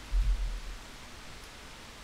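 Steady background hiss from the recording microphone, with one brief low thump about a quarter of a second in.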